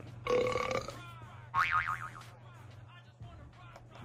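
A voice in the background singing a few short notes: one held note near the start, then a wavering phrase about a second and a half in, over a steady low hum.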